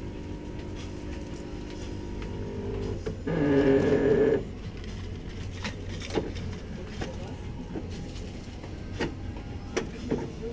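A bean-to-cup coffee machine runs loudly for just over a second, about three seconds in, over a steady hum. Light clicks follow as a paper cup and lid are handled at the machine.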